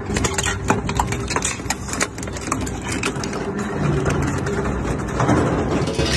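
Twin-shaft shredder running with a steady low drone while its steel cutter discs bite into a small steel gas cylinder, giving frequent sharp metallic cracks and crunches. The grinding drone grows heavier in the second half.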